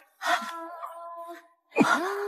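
A young woman's startled gasp as she is suddenly yanked forward, over a few held background music notes that fade out shortly before the end.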